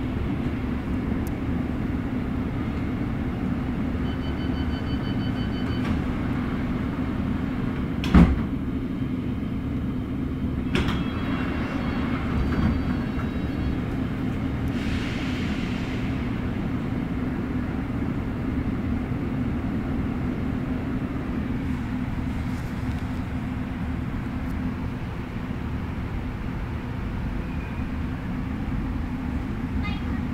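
London Underground S8 stock train heard from inside the carriage: a steady low running hum. Over it come a sharp clunk about eight seconds in, short runs of electronic beeps, and a brief hiss near the middle.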